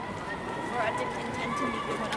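Footsteps of a group of cadets walking in boots on a concrete walkway, with faint chatter and a steady high-pitched tone underneath.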